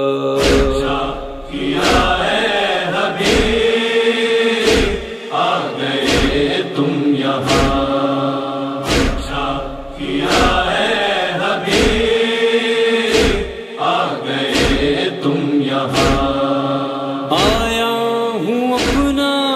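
A wordless chorus of men's voices chanting long held, sliding notes between the verses of a nauha, over steady matam (rhythmic chest-beating) thumps at about one and a half beats a second.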